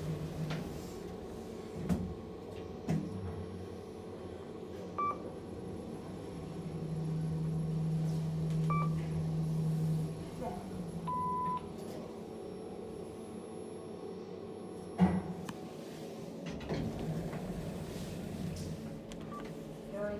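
Kone EcoDisc gearless traction lift car travelling up between floors: a steady low hum of the ride, swelling for a few seconds midway. It is broken by a few short electronic beeps, one held beep about eleven seconds in as the car reaches the floor, and a sharp clunk about fifteen seconds in.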